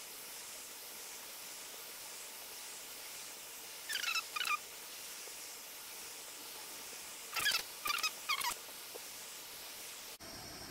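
Steady hiss of a butane micro torch flame playing on brass wire, heard sped up. Two short bursts of high chirps cut across it, a pair about four seconds in and four more around seven and a half to eight and a half seconds.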